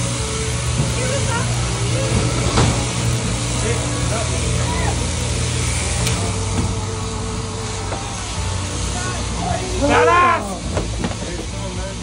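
Sheep-shearing handpiece on an overhead-drive shearing plant running with a steady motor hum and hiss as it cuts the last of a ram's fleece. About ten seconds in, a short, loud call rises and falls.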